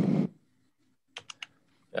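Three quick clicks of a computer keyboard a little over a second in, as a sketch is deleted in CAD software. A loud burst of noise fades out at the very start.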